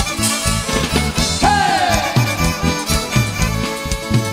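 Live Tierra Caliente band playing an instrumental passage: two violins carry the melody over a bass line with a steady, bouncing beat. About a second and a half in, a note slides down in pitch.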